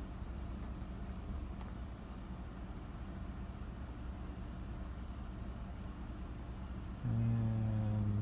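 Steady low rumble of a car's engine idling, heard from inside the cabin. Near the end a held low hum lasting about a second rises above it.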